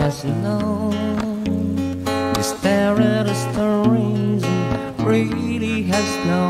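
Live acoustic guitar with a man singing a slow, sustained melody over it, his held notes wavering with vibrato.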